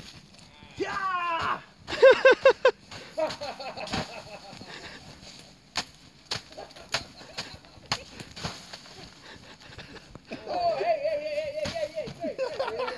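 Footsteps crunching through dry leaf litter, with scattered sharp cracks of twigs snapping underfoot. A voice calls out near the start and breaks into a quick run of laughter about two seconds in, and more voice comes in near the end.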